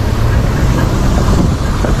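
Garrett 4CD miniature steam traction engine driving along a road, heard from close behind: a steady, loud rumble of its wheels and running gear.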